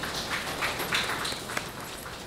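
Light applause from a small audience: a few people clapping unevenly.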